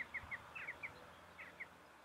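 A wild bird calling outdoors in short, quickly falling chirps, two or three at a time, which stop shortly before the end.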